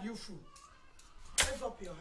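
A thin cane swished and struck once, a sharp crack about one and a half seconds in, followed by a short cry from a voice.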